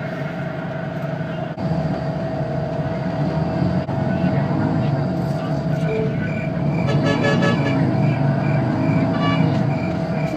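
Engine and road noise heard from inside a moving passenger bus: a steady low drone with a constant high whine. Short higher-pitched sounds come through around seven and nine seconds in.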